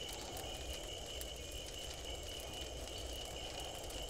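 Faint, steady low rumble of background ambience, with a thin high tone held throughout and no distinct events.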